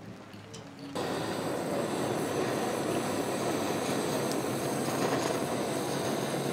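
Food sizzling in a scallop shell on a wire grill over a hot brazier, a dense crackling hiss that starts abruptly about a second in and holds steady.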